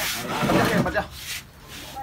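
A close rubbing, scraping noise lasting about a second, then fading back to a quieter background with faint voices.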